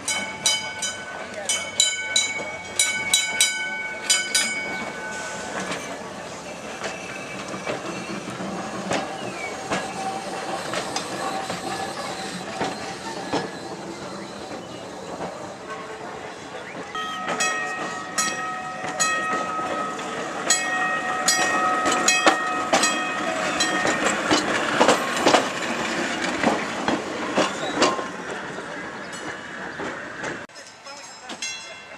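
An electric trolley car running past over the rails, with a bell ringing rapidly in two spells, at the start and again from about 17 to 25 seconds in.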